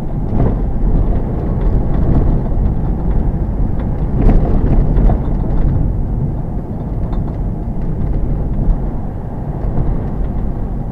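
Car driving along a road, heard from inside the cabin: a steady low rumble of road and engine noise, with a few brief knocks, the clearest about four seconds in.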